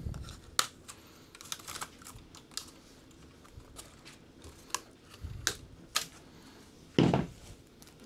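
Scattered sharp clicks and snips of a hand cutter and plastic parts as packing is cut and removed inside a Bambu Lab P1P 3D printer's frame, with a louder knock near the end.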